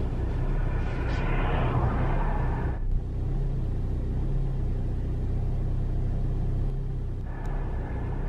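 Inside a moving car: a steady low engine hum with tyre and road noise. The road noise drops about three seconds in and picks up again near the end.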